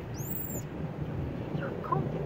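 A single short, very high-pitched call that rises and falls, with a few faint short chirps near the end, over a steady low rumble of background noise.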